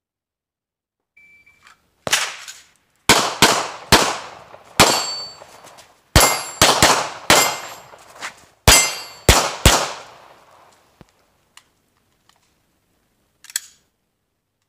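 A short electronic shot-timer beep, then about a dozen pistol shots from a Sig P320 fired in quick strings of two to four, with short pauses between strings as the shooter transitions between targets.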